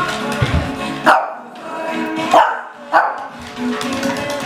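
Shih tzu barking in play: three short barks, one about a second in and two more close together about halfway through, over radio music.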